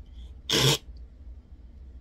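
A woman's single short, breathy vocal burst, like a startled gasp or "hah", about half a second in, acting out being jolted awake; a low steady hum sits under it.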